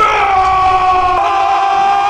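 Two animated characters screaming in fright together: one loud held scream at a nearly steady pitch.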